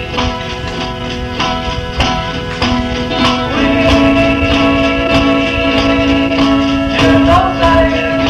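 1960s African garage rock recording: a guitar band with drums playing a steady beat, with a long held note through the middle of the passage.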